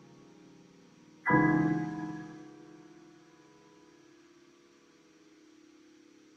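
Piano in a slow, sparse passage: the last chord fading out, then a single new chord struck about a second in and left to ring, dying away slowly.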